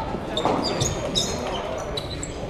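Table tennis ball clicking off bats and table during a rally: several sharp ticks, a few tenths of a second apart.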